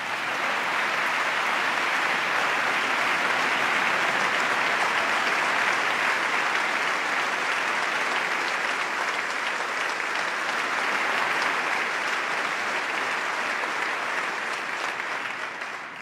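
A large crowd clapping in sustained applause, a dense steady patter of many hands that fades near the end.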